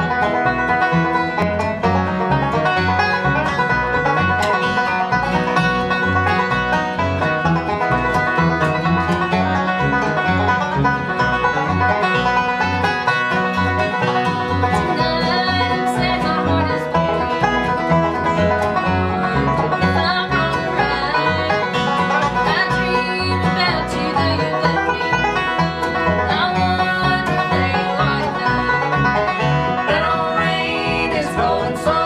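A bluegrass band playing: banjo, acoustic guitar and upright bass, first as an instrumental opening, with a woman's lead vocal coming in about halfway through.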